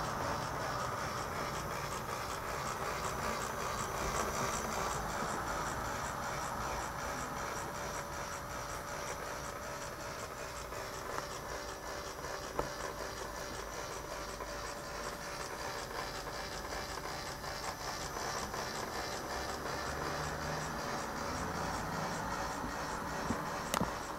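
Small battery-powered motor and plastic gear train of a toy 3D solar system model running steadily as the planet arms revolve, with a few faint ticks.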